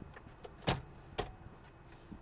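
Clicks and knocks from the car's tilt steering column being released and moved: a louder knock a little over half a second in and a sharper click about half a second later, with a couple of faint clicks before them.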